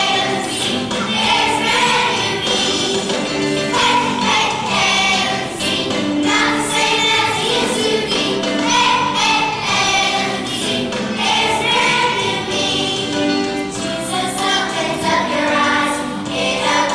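A large children's choir singing a song in unison, with hand motions.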